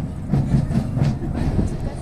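A large group shouting a chant in unison, with a steady beat of about three accents a second.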